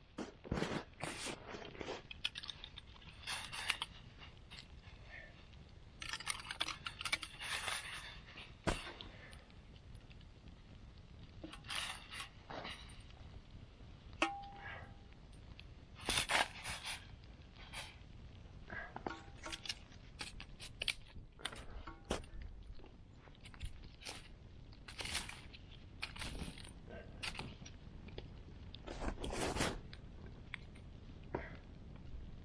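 Irregular bursts of crunching and scraping, with a few sharp single pops, from a man moving about in wet, loose snow and handling a knife and pan beside a crackling wood campfire.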